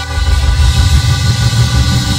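Live church band music: held chords over a busy bass and drum beat.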